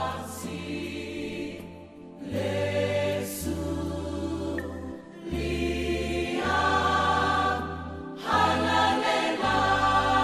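Background music: a choir singing held chords over sustained bass notes that change every second or two.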